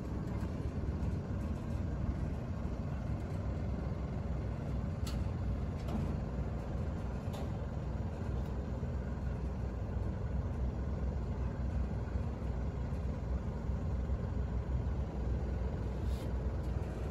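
ThyssenKrupp TE-GL traction service lift travelling upward, heard from inside the cabin: a steady low rumble of the car running up the shaft, with a few faint clicks about five to seven seconds in.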